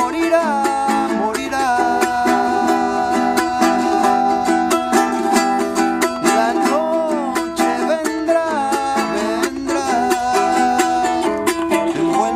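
A man singing while strumming a small double-strung instrument of the charango family, quick rhythmic strums under a held, gliding vocal melody.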